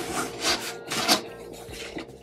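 Cardboard shipping box flaps being pushed open and folded back: cardboard scraping and rustling, with two louder scrapes about half a second and a second in.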